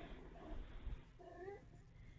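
A cat meowing: short, faint calls at the start, then a longer meow rising in pitch about a second in. A soft low thump comes just before the longer meow.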